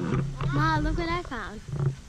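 A child's excited voice calling out with sliding, rising and falling pitch, without clear words.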